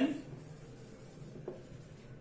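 Felt-tip marker writing on a whiteboard: a faint, steady scratching as a word is written, with one light tick about one and a half seconds in.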